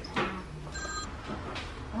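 A brief electronic ringing tone, several steady pitches at once, lasting about a third of a second, with a sharp click just before it.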